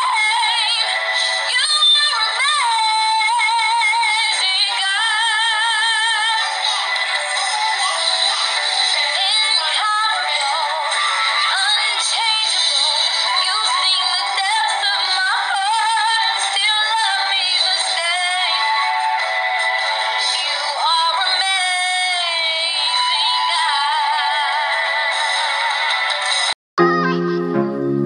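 A woman singing with wide vibrato, her voice thin and without any low range.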